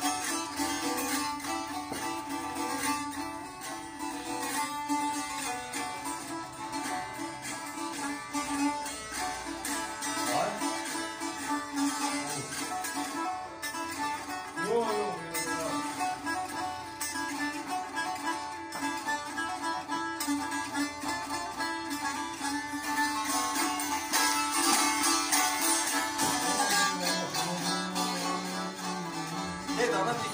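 Solo saz, a long-necked lute, strummed fast and hard, the melody played over a steady drone from the open strings.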